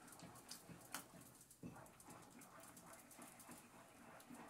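Near silence: faint soft scraping, with a light tap about a second in.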